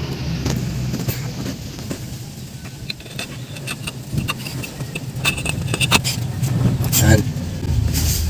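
Metal clinks and taps from handling bolts and a water pump at a car engine, coming more often in the second half, over a steady low rumble.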